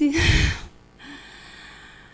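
A speaker's sharp intake of breath close to a microphone, about half a second long, with low rumble from the breath on the mic; then only a faint steady hiss.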